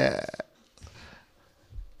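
A man's voice trailing off in a short creaky, gravelly sound, followed by a pause with a faint breath.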